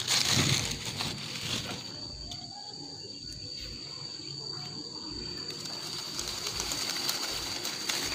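Lychee branches and leaves rustling as fruit bunches are handled and dropped into a woven sack, loudest in the first second, then softer leaf rustling as the branches are pushed about. A steady high-pitched whine runs underneath.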